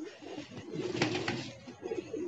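Domestic pigeons cooing, low and murmuring.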